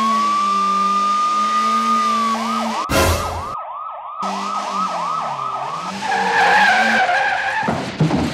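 Police siren: a rising wail held for about two seconds, then a fast yelp sweeping up and down three or four times a second, changing near the end to a wavering warble. There is a short noisy burst about three seconds in.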